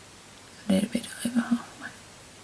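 A woman speaking softly under her breath, close to a whisper, for about a second in the middle.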